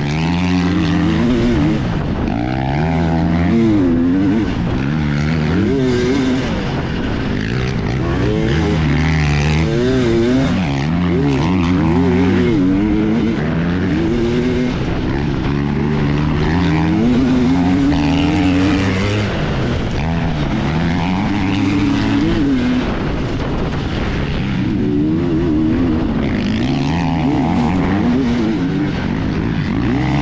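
Two-stroke dirt bike engine racing hard on a dirt trail, its pitch climbing and falling back every second or two as the throttle opens and closes.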